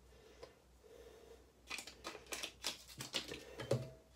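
A spoon clicking and scraping against a small bowl as gelatin powder is added and stirred into a paste. The light, quick clicks come in the second half.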